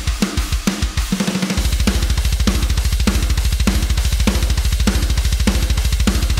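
Soloed metal drum kit: a few separate kick strokes, then about a second and a half in the kick drums break into a fast, even run of sixteenth notes, with regular snare hits and cymbals over them. The sixteenth-note kicks add a lot of energy, which the mixer thinks could be a bit too much.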